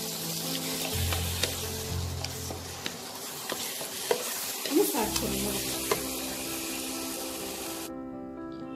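Wooden spatula stirring and scraping mashed eggplant in a non-stick wok over a sizzling frying hiss, with scattered sharp clicks as the spatula strikes the pan.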